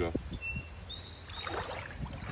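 Water sloshing and splashing around hands holding a rainbow trout in a shallow river to release it, after a brief spoken word at the start. A few faint high chirps sound over it.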